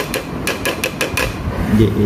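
A quick run of light, sharp taps, about six a second, stopping about a second and a half in: a bowl being tapped to knock ground herbal powder out onto a plate.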